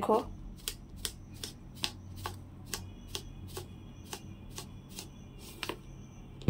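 A faint, regular ticking: sharp clicks about two to three a second, over a low background hum.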